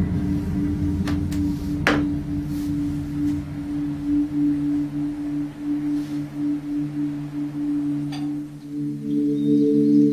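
Ambient chill music with long held, drawn-out tones, played from a phone over Bluetooth through a homemade powered speaker bar. A higher held note joins near the end.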